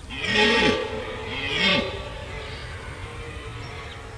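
Red deer stag roaring in the rut: two roars, a long one lasting about a second and a shorter one just after it.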